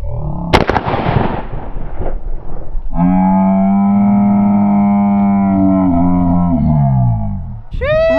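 A shotgun blast about half a second in, followed by a couple of seconds of rushing noise. From about three seconds in comes a long held musical note with many overtones that sags in pitch before cutting off near the end.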